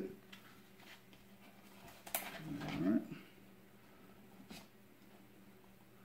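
Quiet handling of a small plastic plant pot full of potting soil: a sharp click about two seconds in, followed by a brief low pitched sound, and a lighter tick about four and a half seconds in.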